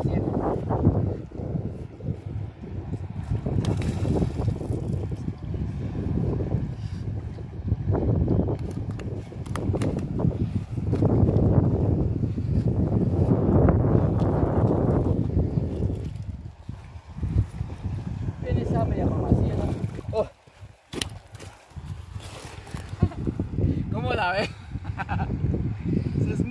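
Wind buffeting the microphone in uneven gusts, dropping away briefly about two-thirds of the way through. Faint, indistinct voices come in near the end.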